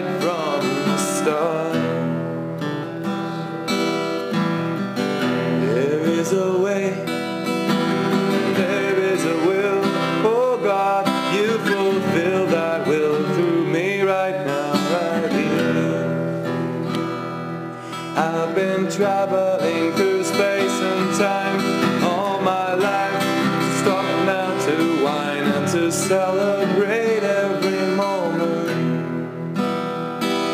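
Acoustic guitar strummed steadily, with a voice carrying a wavering wordless melody over it.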